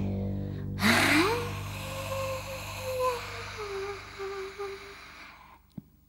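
Free-improvised voice and double bass: a low bass note dies away, then a woman's voice slides upward into a breathy, airy held note that wavers and sinks a little before stopping about a second before the end, an extended vocal technique.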